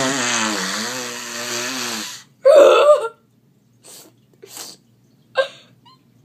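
A boy's exaggerated mock crying: one long wail that wavers and falls for about two seconds, then a loud sob, then several short sniffling breaths.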